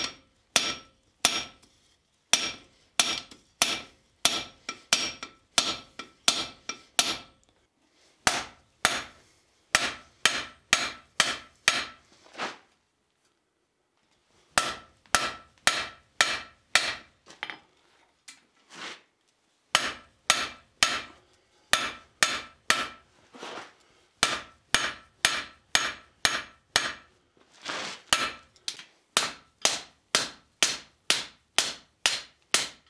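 Hand hammer forging a glowing steel bar on an anvil, about two sharp blows a second, each with a ringing tone from the anvil. The hammering pauses twice for a second or two near the middle. The bar is being forged into a holdfast.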